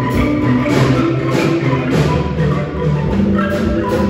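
A marimba ensemble playing with mallets: many marimbas striking a steady rhythmic pattern over sustained low bass-marimba notes.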